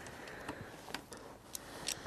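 A few faint, light clicks of small metal parts as the loosened crank bolt is taken out of a bicycle crank by hand, over low background hiss.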